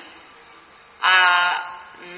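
A man's drawn-out 'aa' hesitation sound, held on one steady pitch for about half a second, beginning about a second in after a short pause in his speech.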